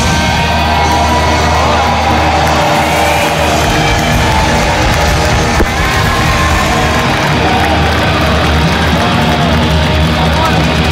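Live rock band playing loud, with a held low bass note in the first few seconds, and the crowd shouting and cheering over the music.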